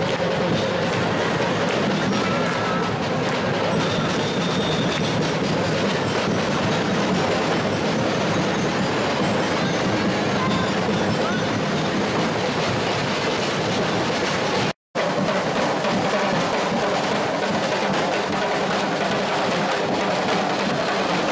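Carnival parade drum corps playing a fast, dense rhythm on marching snare and tenor drums, with no pause in the beat. The sound cuts out completely for a moment about 15 seconds in.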